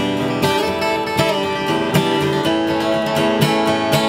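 Early-1970s Martin D-35 dreadnought acoustic guitar strumming chords, an instrumental passage between sung lines, with a strum stroke about every half second over ringing chords.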